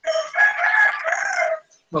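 A single long bird call, starting suddenly and lasting about a second and a half, with a slight drop in pitch near its end.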